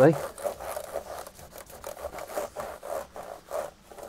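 Cloth dampened with isopropyl alcohol rubbed back and forth over laptop keyboard keys, in quick repeated wiping strokes, a few a second.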